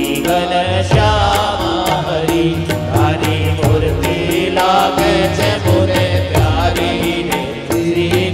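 Devotional music: a sung melody with wavering, ornamented lines over a steady bass and a regular percussion beat.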